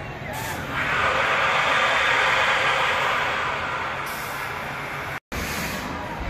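Drop tower ride letting out a loud rushing hiss that swells about a second in and fades away over the next few seconds.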